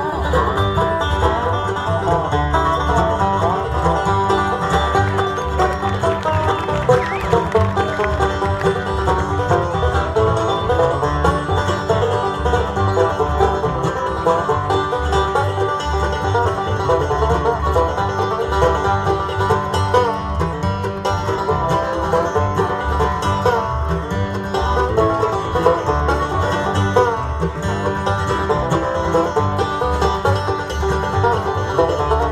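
Bluegrass band playing live, an instrumental passage with the banjo prominent over guitar, mandolin, dobro and bass.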